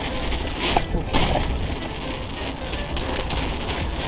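Steady wind noise on a handlebar-mounted action camera's microphone as a bicycle is ridden at speed, under background music.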